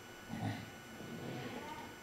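A man's short vocal sound into a handheld microphone about half a second in, in a pause between phrases, with faint low sound after.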